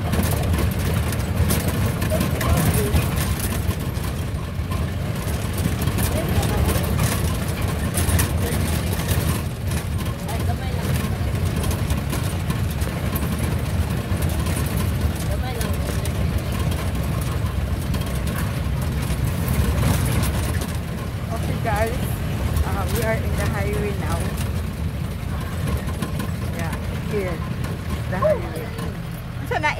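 Jeep engine running and road noise while driving on a rough dirt road, heard from inside the cab: a steady low rumble with no clear change in speed.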